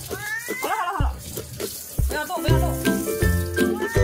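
Ginger kitten meowing three times while being washed under a running tap, the sound of a kitten protesting its bath. The first meow is long and rises then falls in pitch, the second is short, and the third starts near the end. Background music with a steady beat plays underneath.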